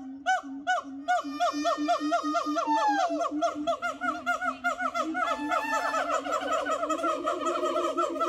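Siamangs calling together: a long run of short, rising-and-falling whooping notes that speeds up, with a few longer sliding notes over a steady lower tone. These are the loud calls they make with an inflated throat sac, carrying over long distances.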